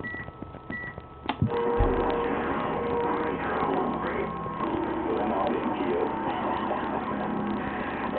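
CB radio receiver: two short beeps, then a click about a second in as another station keys up, and its transmission comes through the speaker as a voice buried in static and hiss.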